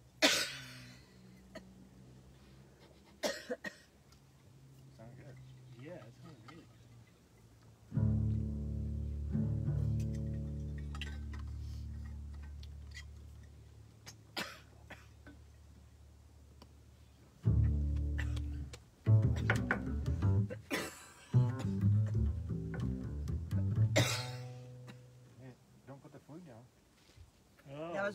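Upright double bass plucked: a long low note about a third of the way in that rings and fades over several seconds, another low note a little later, then a short run of plucked notes. Several sharp coughs fall between the notes.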